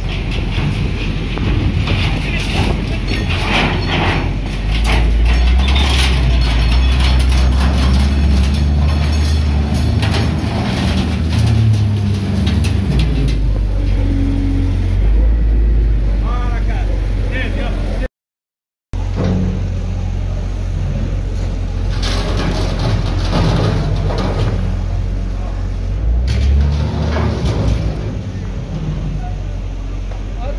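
Hyundai wheel loader's diesel engine running hard as its bucket rams and drags metal railings, with repeated metal clattering and scraping. People's voices run underneath.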